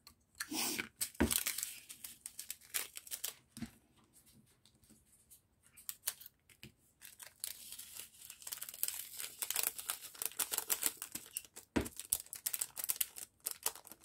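Small clear plastic bag of diamond-painting drills crinkling and rustling as it is handled, with a few light knocks. It goes nearly quiet a few seconds in, then the crinkling turns busier toward the end.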